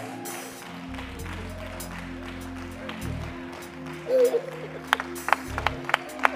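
Soft worship band music with long held keyboard and bass notes. A voice calls out briefly about four seconds in, and from about five seconds hands start clapping in a steady beat, about three claps a second.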